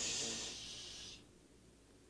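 A person's drawn-out "shhh" calling for quiet, ending about a second in. Then near silence, in which the newly started Atlantic heat pump is barely heard.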